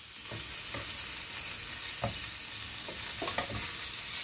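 Pumpkin slices sizzling steadily in hot oil in a frying pan, with a handful of short clicks and scrapes of a metal fork on the pan as the slices are turned over.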